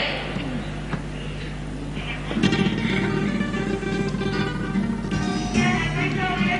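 Spanish guitars of a carnival comparsa strumming the opening of the group's potpourri, with the chords growing louder about two seconds in.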